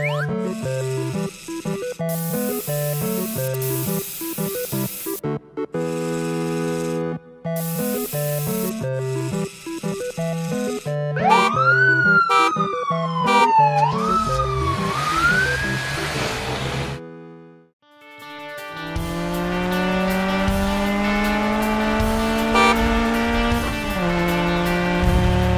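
A looping cartoon music track, then about eleven seconds in a police siren wails up and down twice as a sound effect. After a short gap, a car engine starts running with its pitch rising slowly and steadily, as if accelerating.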